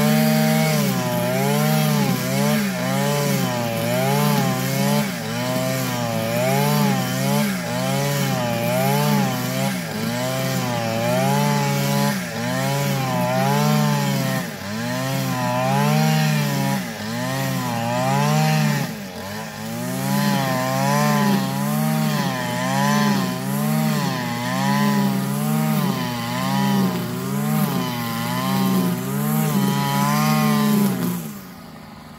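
Petrol string trimmer (whipper snipper) running at high throttle, cutting thick long grass. Its engine pitch rises and falls about once a second as the line sweeps through the grass and takes load, with a brief dip a little past halfway.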